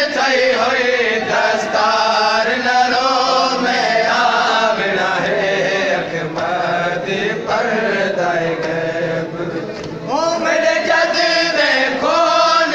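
A group of men chanting a nooha, a Shia lament, together in live recitation with no instruments. The voices dip briefly about ten seconds in, then the group comes back in strongly on the next line.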